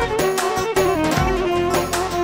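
Balkan wedding band music: a sustained melodic instrument line over a steady, driving percussion beat.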